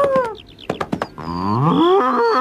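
A bull bellowing, a long moo that rises in pitch and starts about halfway through, preceded by a few sharp knocks.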